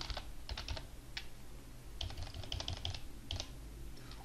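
Typing on a computer keyboard: several short runs of quick key taps with pauses between, as a couple of words are entered.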